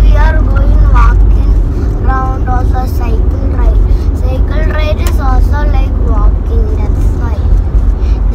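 Steady low rumble of a car driving, heard from inside the cabin, under voices talking on and off.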